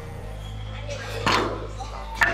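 A weight plate being loaded onto a Smith machine barbell: one sharp clank a little over a second in.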